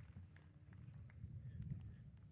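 Faint wind buffeting an outdoor microphone: a low, uneven rumble that rises and falls in gusts, with a few faint clicks.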